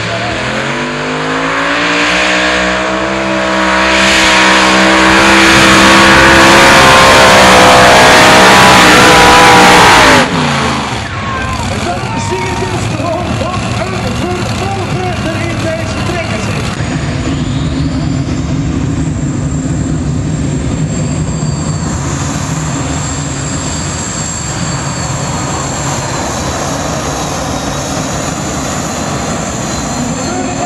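Multi-engine modified pulling tractor launching down the track: its engines rev up with a rising pitch over the first few seconds, then run flat out at full power, very loud, until the sound cuts off abruptly about ten seconds in. Afterwards engines idle more quietly, and a steady high whine starts about halfway through.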